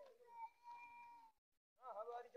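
A faint, high-pitched call held for about a second, followed near the end by children's voices.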